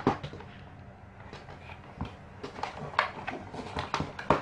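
Plastic parts of a table fan's motor housing being handled and fitted together: scattered light clicks and knocks, a few sharper ones in the second half.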